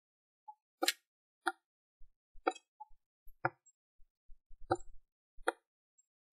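Computer mouse clicks: about eight short, sharp clicks at irregular intervals, with silence between them.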